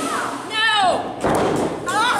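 A wrestler's high yell falling in pitch about half a second in, then a sharp thud on the wrestling ring mat about a second later, and another short yell near the end, with the echo of a large hall.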